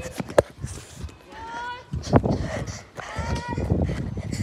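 Footsteps of a person running with the recording phone, with handling knocks and short vocal sounds over them.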